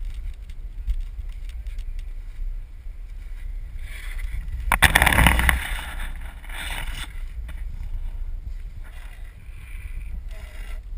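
Longboard wheels rolling on asphalt as riders pass the camera, with one loud, brief rush about five seconds in as a board passes close by, over a steady low wind rumble on the microphone.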